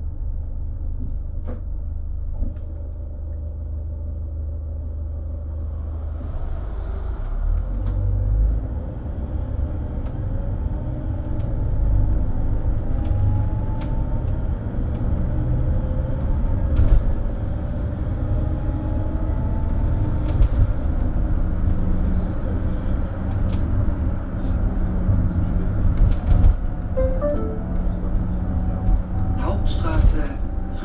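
Mercedes-Benz Sprinter City minibus's diesel engine and tyres rumbling as it drives, heard from on board. The rumble grows louder about six seconds in as it picks up speed, with a faint rising drivetrain whine and a few light rattles.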